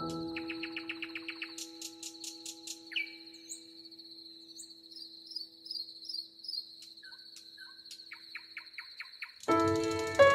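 Birds chirping and singing in quick repeated notes, with one falling whistle, over a steady high insect trill. The last piano note rings and fades, and a new piano track comes in loudly just before the end.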